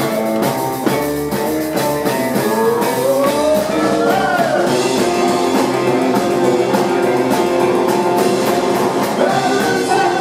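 A live rock and roll band playing loud: electric guitar, keyboard and drums with a singing voice, with a rising sliding note about four seconds in.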